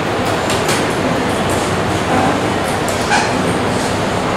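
Handheld whiteboard eraser wiping across a whiteboard in short strokes that swish several times, with a brief squeak about three seconds in, over steady loud room noise.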